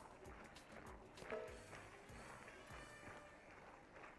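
Near silence: faint light clicks and scrapes of a spatula stirring sauced pasta in a pan, over faint background music.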